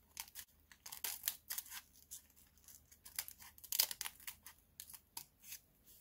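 Scissors cutting through the folded brown kraft paper of a paper lunch bag, a series of short, irregular snips.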